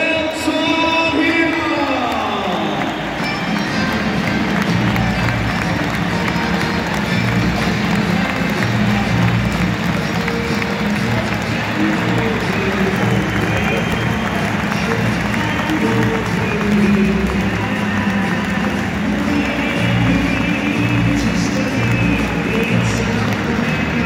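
Music played over a football stadium's PA system with a pulsing bass line, over the noise of a large crowd cheering and applauding. In the first three seconds a pitched sound slides steadily down in pitch.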